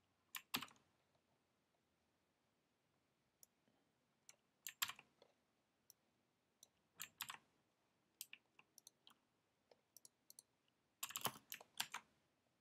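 Faint, scattered keystrokes and clicks on a computer keyboard, a few at a time, with a quick flurry of them near the end.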